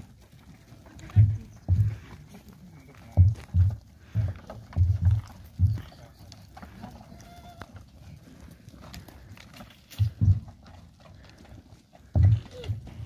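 A herd of long-haired goats on the move along a dirt lane, hooves shuffling and scattered faint calls, under loud irregular low thumps close to the microphone.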